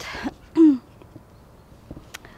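A woman clearing her throat: a quick breath, then one short vocal sound falling in pitch about half a second in.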